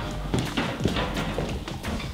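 Footsteps walking across a hard tiled floor, an irregular run of short steps.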